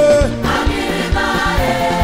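Live gospel music: a choir singing long held notes over a band whose drums keep a steady beat.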